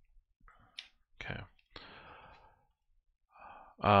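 Pages of a printed hardcover book being turned by hand: a few short papery rustles followed by a longer swish of paper.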